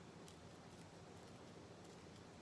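Near silence: room tone, with a few faint ticks as a wooden stick packs licorice root into the hole in the base of a wax figure candle.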